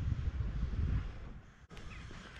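Wind buffeting the microphone: a low rumble that is strongest in the first second, then eases off, with a brief dropout near the end.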